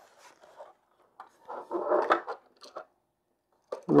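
Handling noise as a cable is worked into the VGA port on the back of an LCD monitor: light rubbing and scraping of the cable against the plastic case, with a few faint clicks, loudest about two seconds in.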